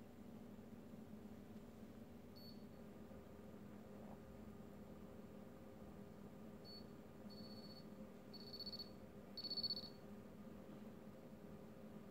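Digital oral thermometer beeping: one short high beep about two seconds in, then four beeps in quick succession from about seven to ten seconds in, the last the loudest, signalling that the temperature reading is done. Faint steady room hum underneath.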